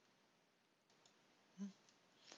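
Near silence: room tone, with a faint computer mouse click about a second in and a brief voiced hum from a man about a second and a half in.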